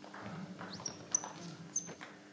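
Footsteps and clothing rustle close by, with three short, sharp high squeaks of shoes on a wooden sports-hall floor about one, one and a bit, and nearly two seconds in.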